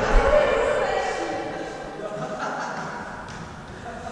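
Echoing room sound of a large sports hall: indistinct players' voices fading away, with a few faint thuds of a volleyball.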